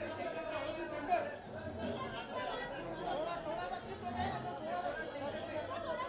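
Indistinct chatter of many people talking at once, overlapping voices with no single clear speaker.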